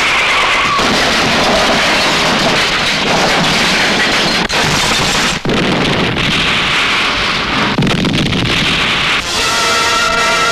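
Action-film sound effects: a loud, continuous din of a car chase and a car exploding into a fireball, mixed with the background score. A held musical chord comes in near the end.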